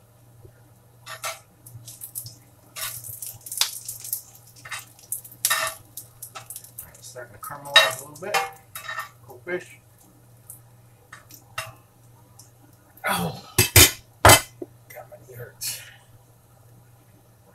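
A metal spatula scraping and tapping in a cast-iron skillet while stirring onions, in short irregular strokes, with a few sharp loud clanks near the end. A steady low hum runs underneath.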